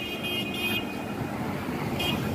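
Street traffic: cars moving along a wet road, a steady wash of engine and tyre noise, with a high steady whine that fades in the first second.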